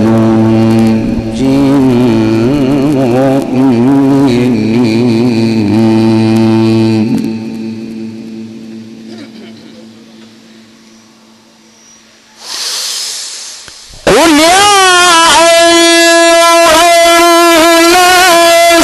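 Male Quran reciter chanting in the melismatic Egyptian mujawwad style into a microphone. His voice winds up and down in pitch through a long phrase that ends about seven seconds in and then fades away slowly. After a short burst of noise, a new phrase starts loudly about fourteen seconds in, rising in pitch and then held on a steady note.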